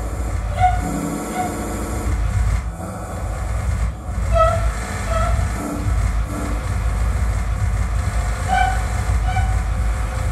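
Soundtrack of a low, steady rumble with a pair of short pitched tones about every four seconds, like a distant train horn.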